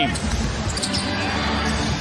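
Arena crowd noise with a basketball being dribbled on a hardwood court and the faint squeak of sneakers.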